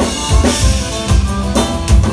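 Live band playing an instrumental passage with no singing: the drum kit leads with a steady kick and snare beat over bass and acoustic guitar.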